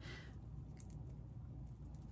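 Quiet room with a low steady hum and a few faint ticks of a pair of earbuds and their packaging being handled and opened.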